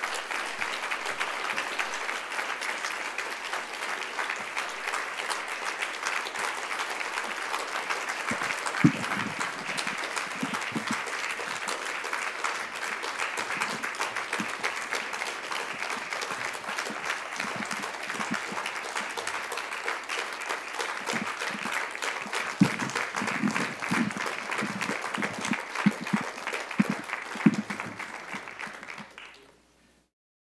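Audience applauding steadily, with a few low thumps in the second half; the applause fades out quickly just before the end.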